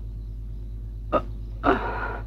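Two brief vocal sounds from a man straining as he sits up in bed: a short one about a second in and a longer, breathier one near the end. A steady low hum runs underneath on the old film soundtrack.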